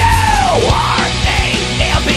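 Loud horror-punk rock song with heavy drums and distorted guitars. A held, yelled high note bends sharply downward about half a second in.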